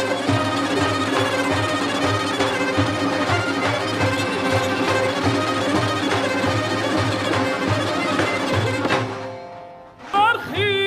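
Persian traditional ensemble music: a kamancheh (bowed spike fiddle) plays a melody over the rhythmic beat of tombak goblet drum and daf frame drums. The music dies away near the end.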